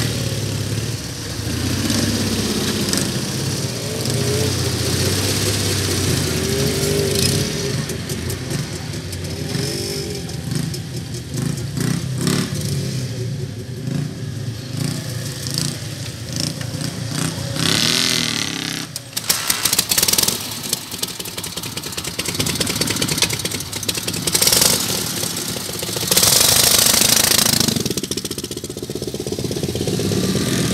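Motorcycle engine idling, its speed wandering up and down, with a cluster of sharp clicks about twenty seconds in.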